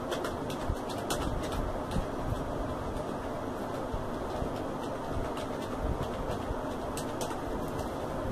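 Computer keyboard keys clicking in short irregular runs as text is typed, over a steady low background hum.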